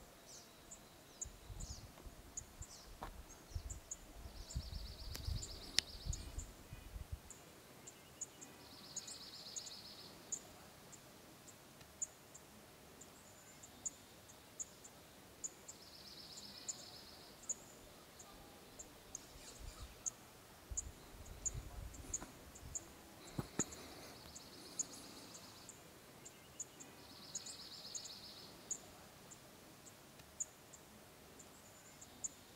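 Faint outdoor wildlife ambience: a high trill lasting about a second comes back five times, a few seconds apart, over a steady run of faint high ticks. There is a low rumble for a few seconds near the start and again about two-thirds of the way through.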